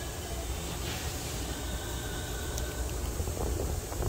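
Steady low rumble with a light, even hiss, with no distinct event standing out.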